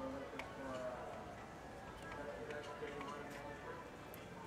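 Indistinct voices and background music at a moderate level, broken by scattered sharp ticks.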